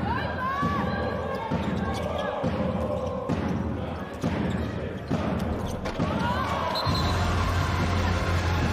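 A handball bouncing on the hard indoor court floor, a sharp thud about once a second, as the attackers work the ball, with players' voices calling out between bounces.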